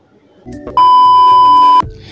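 A single loud, steady electronic beep, one unchanging tone about a second long that starts and cuts off abruptly, like a censor bleep added in editing, over faint background music.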